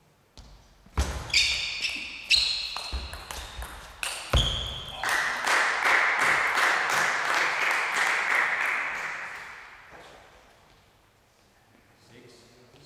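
A table tennis rally: a string of sharp ball hits and knocks for about four seconds. Then applause in a large hall that fades away by about ten seconds, as the point is won.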